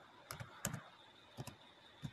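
Computer keyboard typing: a few faint, separate keystrokes as a word is typed.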